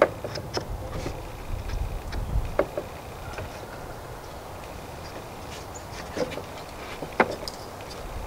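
Light wooden knocks and clicks as strips of a wooden cabinet door frame are handled and fitted together, a handful of separate taps with the sharpest near the start and near the end, and a low rumble around two seconds in.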